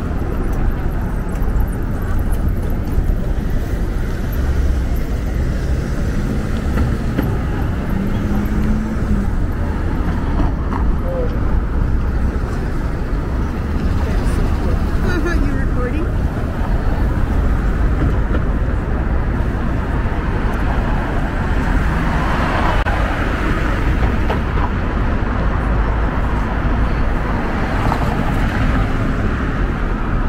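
City street ambience: a steady rumble of traffic with indistinct voices of passers-by, and a louder pass of noise about two-thirds of the way through.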